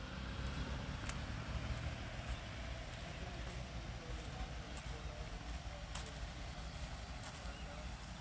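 Quiet background: a steady low hum with a faint hiss, a few soft clicks, and faint distant voices.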